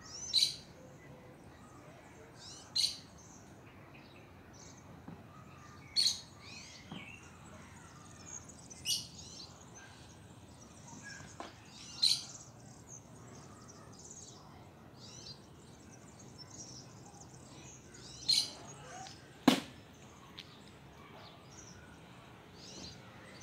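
Small songbirds chirping in short, high calls every few seconds over a quiet garden background, with one sharp click near the end.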